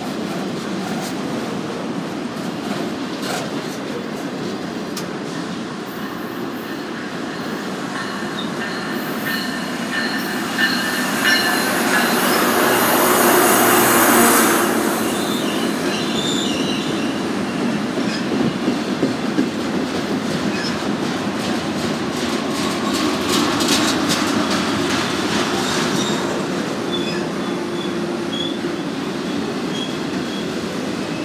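Freight train of auto-rack cars rolling past close by, its wheels clattering over the rails with thin steady squeal tones. A louder swell of rumble about twelve to fifteen seconds in comes as a GO commuter train arrives on the adjacent track.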